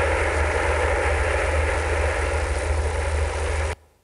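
Audio playback of the demodulated phase disturbance on a 401 km optical fibre link: a steady noise with a strong low hum, which the speaker takes for a locomotive probably passing along the railway beside the fibre. It cuts off suddenly near the end.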